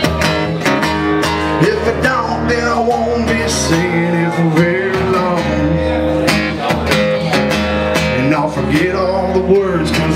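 Live band music led by electric guitar with a steady beat, an instrumental stretch between sung lines of a rock-country song.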